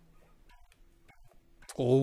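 A man singing one loud 'La' into a microphone as a recording level check, starting near the end and sliding down in pitch. Before it, only faint scattered clicks over a quiet room.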